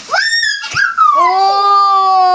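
High-pitched, drawn-out vocal cry: a short squeal that rises and then slides down, followed by a long note held at a steady pitch.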